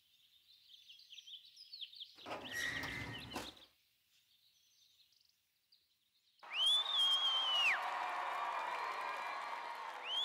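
Faint bird-like chirps, then after a silent gap a loud whistle-like tone that glides up, holds with a slight waver and drops away, over a steady background hum.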